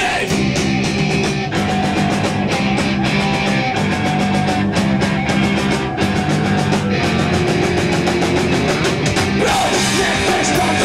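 Punk rock band playing live at full volume: distorted electric guitars over a fast, steady drum beat, with little or no singing.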